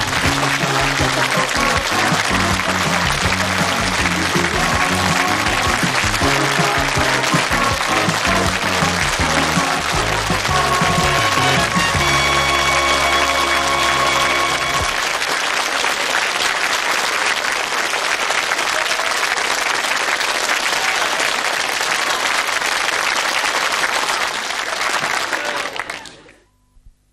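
A sitcom's closing theme tune over studio audience applause; the music ends on a held chord about fifteen seconds in, and the applause carries on alone, fading out at the very end.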